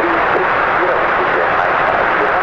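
Airband radio static from an open transmission: a steady, band-limited hiss on the air traffic control frequency, with a faint voice barely showing beneath it.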